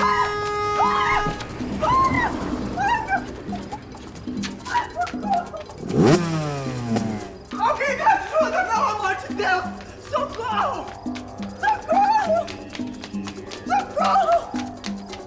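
A car horn blares at the start, and a car engine revs up and falls away about six seconds in. Under them run background music with a steady beat and a woman's cries.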